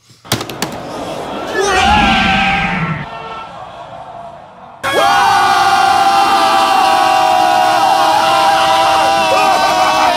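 A few sharp clicks, then a swelling whoosh of a time-travel sound effect that fades away. About five seconds in, several men's voices break suddenly into one long sustained yell over the effect.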